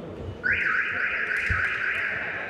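A referee's whistle blown in one long, loud, trilling blast, starting abruptly about half a second in and held to the end, echoing in a sports hall.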